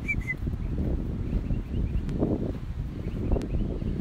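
Outdoor background: a steady low rumble of wind on the microphone, with a bird giving a short two-note chirp right at the start and fainter chirps a second or so later.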